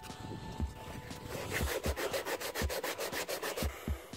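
Sandpaper rubbed by hand over a primed, 3D-printed PLA half-shell in quick back-and-forth strokes, most distinct in the second half. The primer coat is being sanded down where it sits too high, to get a smooth surface before repainting.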